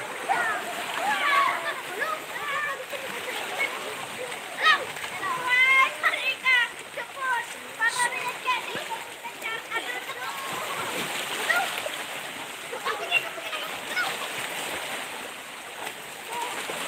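Voices of swimmers calling and shouting across the water, over small waves splashing on the rocks of the shore.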